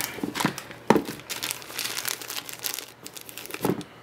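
Thin plastic bag crinkling and rustling as a hand handles it, with sharper crackles about a second in and again near the end.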